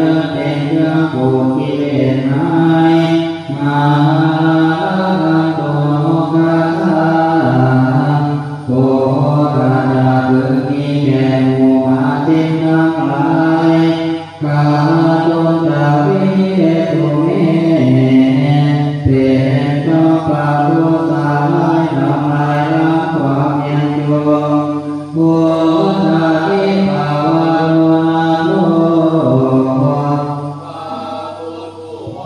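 Group of Thai Buddhist monks chanting Pali verses together in unison for the evening chanting service, in a steady, melodic recitation. The phrases are broken by short breath pauses every few seconds.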